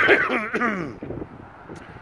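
A man clearing his throat, a rough voiced rasp that starts suddenly and dies away after about a second.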